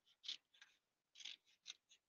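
Scissors cutting patterned paper cards into strips: a quick series of about six short, crisp snips, unevenly spaced.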